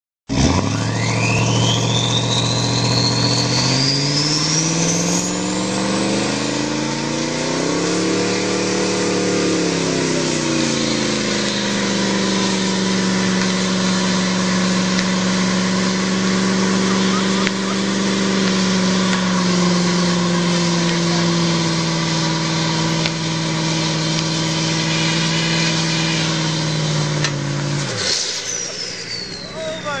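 Twin-turbocharged Cadillac Escalade EXT V8 revving up into a burnout. A turbo whistle climbs over the first few seconds as the revs rise, and the engine then holds steady high revs for about fifteen seconds while the rear tyres spin. Near the end the revs drop sharply and the turbo whistle falls away.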